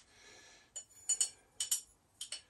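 Caraway seeds rattling in a small spice jar as they are shaken out into a measuring spoon: a few short, high rattles and clinks in the second half.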